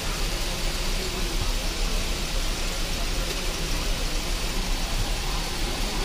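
Steady background hubbub of a busy street market: an even wash of noise with no single clear voice standing out.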